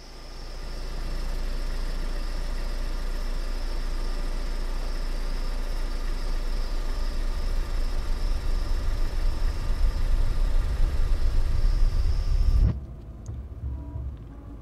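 Car engine running: a steady low rumble that grows louder and more uneven from about halfway, then cuts off abruptly about a second before the end.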